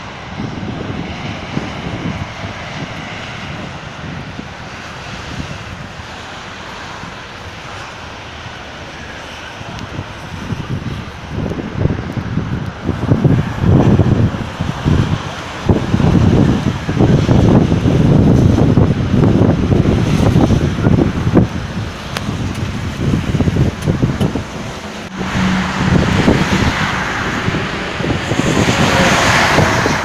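Road traffic rumbling, with wind gusting on the microphone, the gusts heaviest in the middle.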